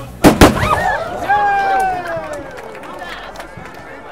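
Two sharp, loud bangs close together, then a person's drawn-out call that falls slowly in pitch.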